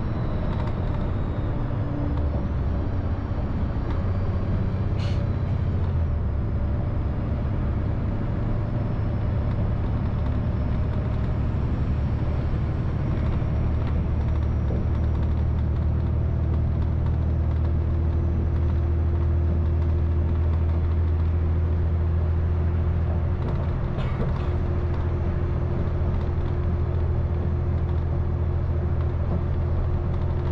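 Inside a city transit bus cruising at highway speed: steady engine drone and road rumble, with two brief clicks, one about five seconds in and one near the end.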